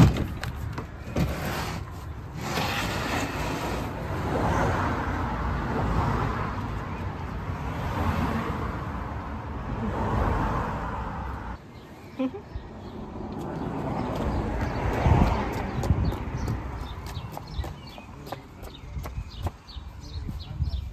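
Cars passing on a road, several in turn, each swelling and fading over a few seconds, after a single sharp knock at the start.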